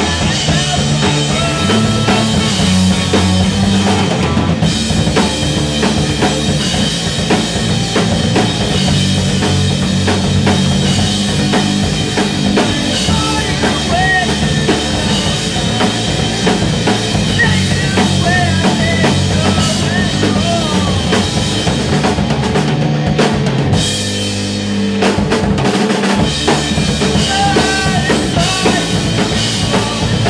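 Live rock band playing amplified, with a drum kit's bass drum and snare keeping a steady beat under electric guitars. The band briefly thins out about 24 seconds in before the full sound returns.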